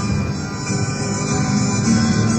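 Live rock band playing an instrumental passage with sustained chords and no singing.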